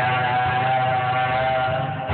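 Karaoke music with one long, steady held note over the backing track, recorded dull and muffled on a mobile phone.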